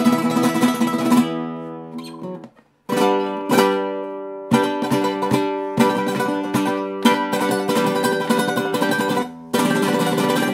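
Cutaway nylon-string flamenco guitar played solo: sharply struck chords and plucked notes that ring out, with a brief stop about two and a half seconds in before the chords resume.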